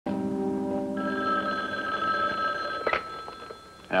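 A short held music chord, overlapped by a desk telephone's bell ringing for about two seconds, which stops with a sharp click as the handset is lifted.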